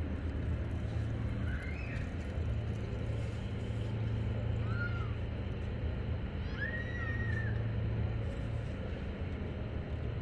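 City street ambience: a steady low rumble of traffic and crowd noise, with three short high whistle-like sounds about two, five and seven seconds in, the last one longer.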